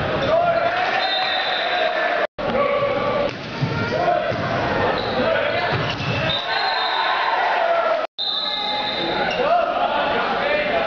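Volleyball rally in a gymnasium: the ball is struck and players' shoes work the hardwood court, under the echoing voices of players and spectators. The sound drops out completely for an instant twice.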